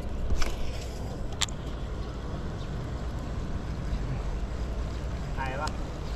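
Steady low rumble of wind on an action camera's microphone, with three sharp clicks in the first second and a half as a lure is cast with a baitcasting rod and reel. A brief faint voice comes near the end.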